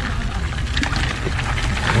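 Water splashing and trickling off a netted bait bag full of crabs as it is hauled out of shallow seawater.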